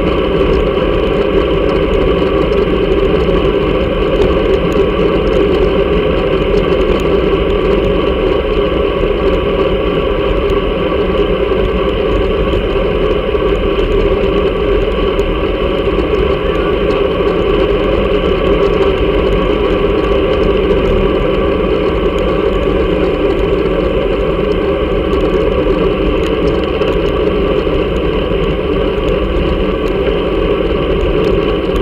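Steady rumble of wind buffeting and road vibration picked up by a camera mounted on a road bike's handlebars while riding.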